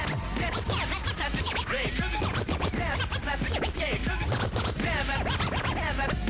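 DJ scratching a vinyl record on a turntable: rapid back-and-forth pitch sweeps, one after another, over a low bass.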